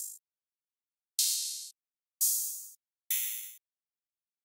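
Custom synthesized open hi-hat samples previewed one after another: the end of one, then three more about a second apart. Each is a bright hiss that starts suddenly and fades out over about half a second.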